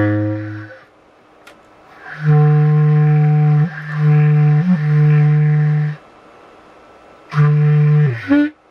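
Low single-reed woodwind played improvised, in long low notes: one dying away at the start, then one held for about four seconds with two brief breaks, and another beginning near the end.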